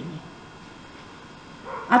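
A pause in a woman's speech: faint, steady background hiss, with her voice starting again near the end.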